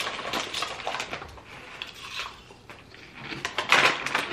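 Hand-cooked crisps and their packet crackling and crunching as they are eaten: a run of small crackles, with a louder, longer crinkle shortly before the end.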